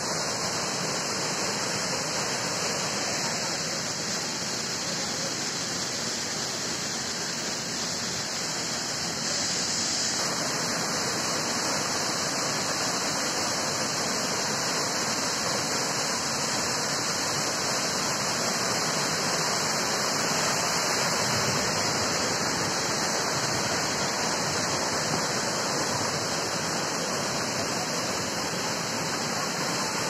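Waterfall pouring over rocks: a steady rushing of water that does not let up.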